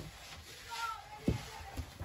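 Quiet handling of dough and a wooden rolling pin on a wooden dough board, with a short soft knock of wood on wood about a second in and a lighter one just after, under faint background voices.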